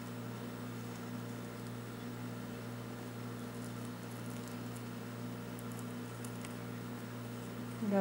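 Steady low electrical hum, with a few faint ticks and rustles from hands tying a knot in thin metallic cord threaded through a craft-foam piece.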